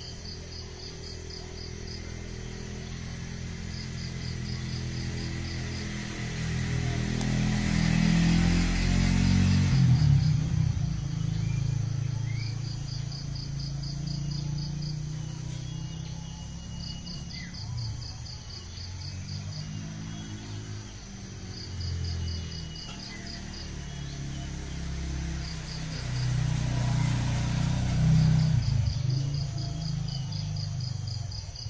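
An insect chirping in short, regular trains of rapid pulses that repeat every two to three seconds. Under it runs a low, music-like sound that swells about a third of the way in and again near the end.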